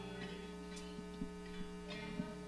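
Steady electrical hum from the band's amplified stage gear, as a strummed electric guitar chord dies away at the start, with a few faint taps.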